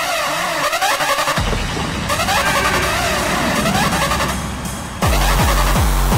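Old-school hardcore/gabber track: a breakdown without the kick drum, a wavering synth melody over a low drone, then the distorted gabber kick drum comes back hard about five seconds in.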